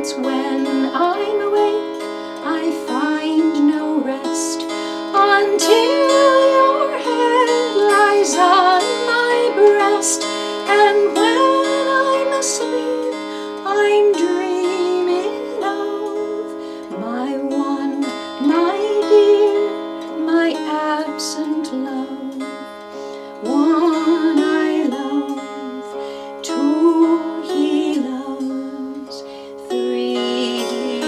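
Appalachian mountain dulcimer strummed and fretted, playing an instrumental tune over a steady drone.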